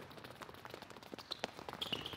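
Faint, quick footsteps of several players stepping in and out of an agility ladder on an indoor court, with a brief high shoe squeak near the end.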